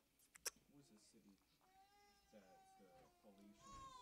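A cat meowing faintly several times in another room, ending with a louder rising meow; a single sharp click sounds about half a second in.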